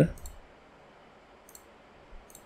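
A spoken word trails off, then a few faint computer mouse clicks follow as a file is picked in a file dialog.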